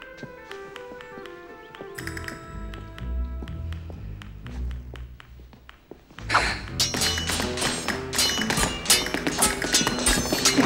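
Orchestral film score, soft and sustained at first, swelling in the low end from about two seconds in. About six seconds in it turns loud and busy, with rapid sharp clicks and knocks of steel swords clashing.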